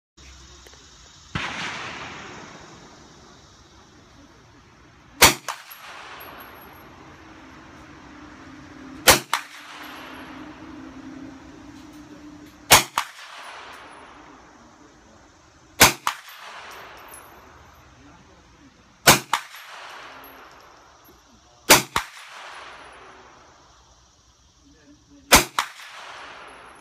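Hi-Point 9mm blowback carbine firing seven single, slow-aimed shots, spaced about three to four seconds apart. Each sharp crack is followed a fraction of a second later by a quieter second report. A softer bang comes about a second in.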